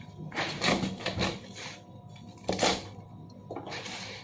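Large chef's knife chopping spinach leaves on a plastic cutting board: a series of uneven chops, some in quick clusters and some about a second apart, each a crisp knock of the blade through the leaves onto the board.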